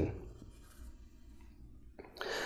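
A pause in a man's speech, his last word trailing off at the very start, then faint room tone with a low hum and a couple of slight small noises.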